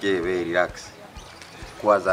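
A man speaking in a conversation, with a pause of about a second in the middle.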